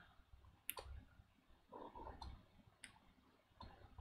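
Near silence with three faint, sharp clicks spread out over a few seconds.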